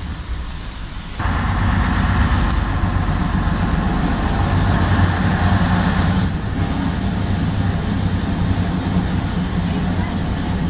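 Leyland PD2 double-decker bus's diesel engine running under way, heard from inside the upper deck. About a second in it gets suddenly louder, with a higher drone added over the low engine note; this eases off about six seconds in.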